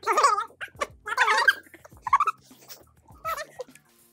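Several short, high cries, each with a wavering pitch.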